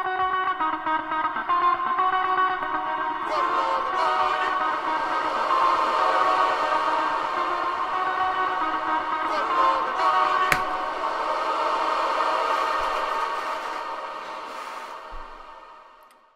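A funk guitar sample played dry and layered with a copy smeared in long, washy reverb from the Valhalla SuperMassive plugin: sustained, blurred guitar chords with a vocal snippet buried in the wash. There is one sharp click about ten seconds in, and the sound fades out near the end.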